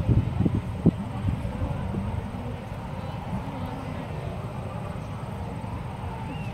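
Open-air ambience with wind rumbling on the microphone and faint distant voices, and a single sharp knock just under a second in.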